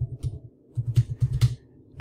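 Typing on a computer keyboard: a few keystrokes at the start, then a longer quick run of keystrokes about a second in.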